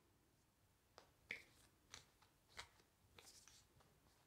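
Near silence, broken by a few faint, short clicks spread over a few seconds.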